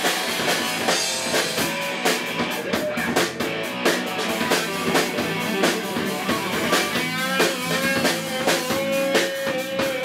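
Live rock band playing loud in a small room: a drum kit pounding a fast, steady beat with cymbals, under electric guitar. About seven seconds in, a long held note with a wavering pitch comes in over the band.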